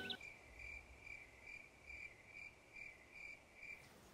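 Faint cricket chirps, evenly spaced at about two a second: a comic "crickets" sound effect marking an awkward silence after a call for volunteers.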